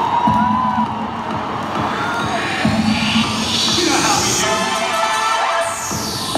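Large arena crowd cheering and screaming, with music playing over the PA. Near the end the music brings in a sweep falling in pitch.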